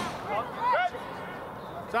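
Short shouted calls across a football pitch, loudest just under a second in, over open-air background noise, with a brief sharp knock near the end.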